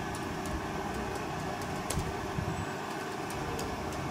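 Faint clicks of a laptop keyboard being typed on, a few scattered keystrokes, over a steady low background rumble.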